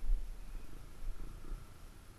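Dirt bike engine running with a low rumble as the bike rolls down a dirt trail, easing off slightly toward the end.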